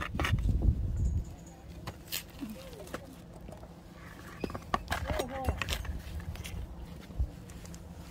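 Thin plastic flower pot being handled as a root-bound marguerite is worked loose from it: scattered clicks, knocks and scrapes of plastic, soil and leaves. There is a muffled low rumble in the first second.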